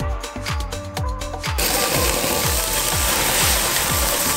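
Background music with a steady kick-drum beat. About one and a half seconds in, a loud, even sizzling hiss joins it: garlic butter spooned onto lobster tails on a hot grill.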